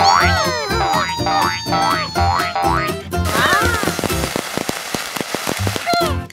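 Upbeat cartoon background music with a steady beat. Over it, high squeaky sounds slide up and down through the first half, and a brighter shimmering wash comes in around the middle.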